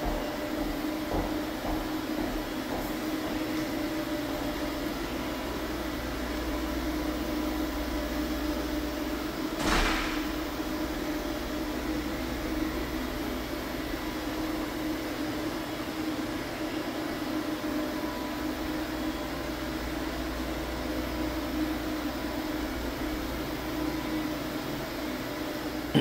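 Walk-behind UV floor-curing machine running, its lamp and cooling fans giving a steady hum as it cures a fresh UV-cure finish on a hardwood floor. A single short rushing sound comes about ten seconds in.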